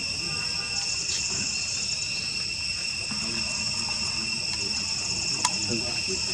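Steady insect chorus: a continuous high shrill held at two or three even pitches, with one sharp click about five and a half seconds in.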